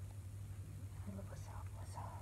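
A person whispering softly, starting about a second in, over a steady low hum.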